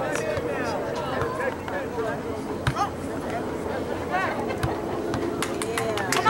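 Scattered shouts and chatter of players and spectators at a soccer match, over a steady outdoor background, with a few sharp knocks.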